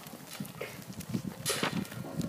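Hooves of a mob of merino ewes walking and shuffling on dirt: a steady, irregular patter of many small knocks, with one sharper sound about one and a half seconds in.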